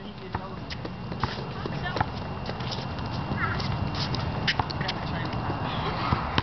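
Footsteps on a hard outdoor court surface, irregular knocks and scuffs, over a low rumble of camera handling noise that grows slowly louder.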